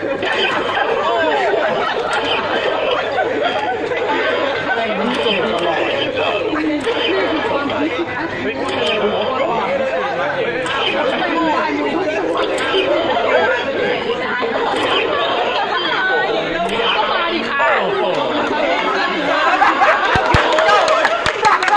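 Chatter of several people talking at once, overlapping voices at a steady level.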